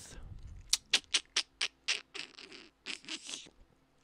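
A quick run of about seven light, sharp clicks over a little more than a second, then fainter rustling and ticking.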